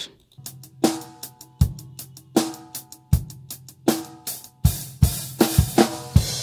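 Playback of a multi-mic acoustic drum kit recording: kick and snare alternating in a slow, steady beat, with a hi-hat, starting just under half a second in. A wash of cymbal comes in near the end.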